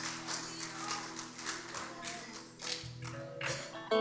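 Worship band playing quietly: faint held tones under light, irregular taps.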